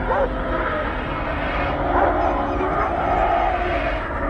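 A dog growling and giving a few short barks or whines over a steady low rumble.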